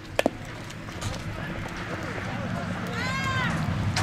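A softball bunted off a metal bat: a sharp double click with a brief ring just after the start. Spectators call out throughout, with one high yell that rises and falls about three seconds in.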